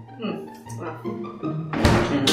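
Background music, with a loud thunk near the end as a refrigerator door is shut.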